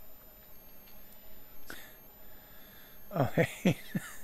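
About three seconds of quiet room tone with a faint high-pitched whine, then a man's brief chuckle and 'uh' near the end.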